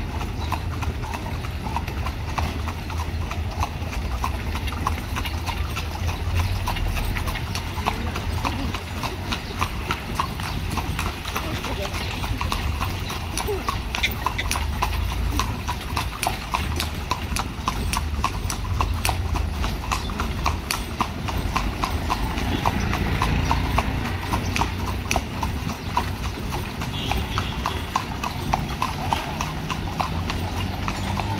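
Horse's hooves clip-clopping in a quick, steady rhythm on a paved street, heard from the carriage the horse is pulling, over a constant low rumble.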